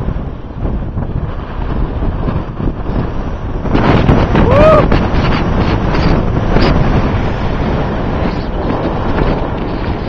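Wind buffeting the microphone throughout. About four seconds in, a person's short yell rises and falls in pitch and a body splashes into the lake feet-first from the cliff, the loudest moment.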